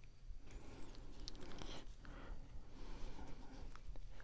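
Faint rustling and sliding of a stack of small printed trading cards being handled and shuffled through by hand.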